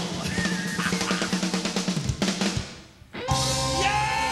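Live rock band playing, the drum kit loudest with a steady beat over a bass line. The band drops out briefly just before three seconds in, then comes back in with held chords.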